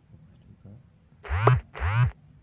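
Two short, loud vocal calls in quick succession near the end, each rising then falling in pitch.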